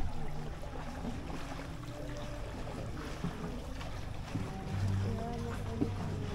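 Steady low rumble of a ride in a small hand-rowed wooden boat on a canal, swelling briefly about five seconds in, with a few faint higher tones above it.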